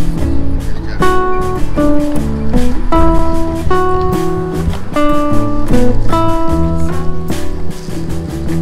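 Background music led by plucked guitar, a quick run of separate picked notes over a steady low bass.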